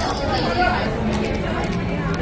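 Indistinct chatter of voices in a busy indoor food court.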